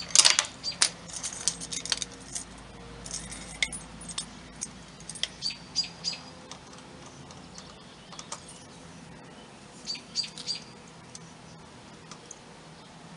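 Short bursts of air hissing and metallic clicks as an air chuck is pressed on and off a truck tire's valve stem while the tire is aired up. The loudest burst is right at the start, with more in clusters later on.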